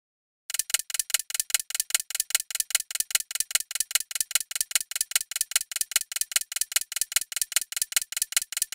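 Clock-ticking sound effect used as a quiz countdown timer: rapid, evenly spaced ticks, several a second, starting about half a second in.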